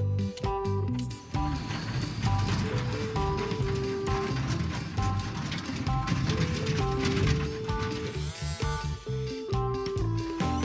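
Background music over the whirring gear noise of a remote-controlled toy lorry's electric drive motor as it drives.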